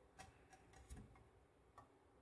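Near silence broken by about five faint, light clicks of a steel sashimi knife being shifted against a wooden cutting board, the strongest about a second in.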